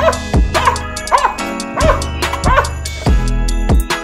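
Young Belgian Malinois barking in short, high yips that rise and fall in pitch, about five in quick succession, over background music with a steady beat.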